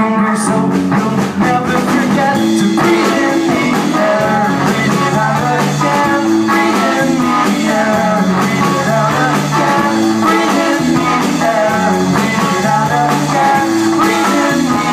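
Live rock band playing through a club PA: electric guitars and a drum kit, with two voices singing into microphones.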